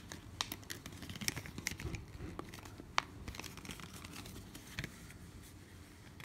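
Hands handling a plastic phone case: faint scattered clicks and light rustling, with one sharper click about three seconds in.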